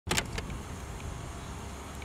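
City street traffic: a steady low rumble, with a few short clicks in the first half second.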